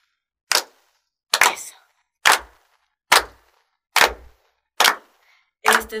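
Hand claps in a slow, steady beat, seven claps a little under a second apart, counting in the rhythm for a children's song.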